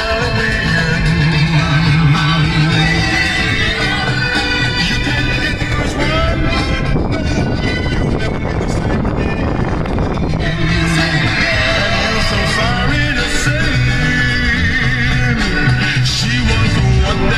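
A song with singing playing through a car stereo, heard inside the vehicle's cabin. The voice drops out for a few seconds in the middle.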